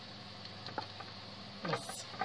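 A few faint clicks from hands handling screw-top metal jar lids over a steady low hum, with a brief louder rustle near the end.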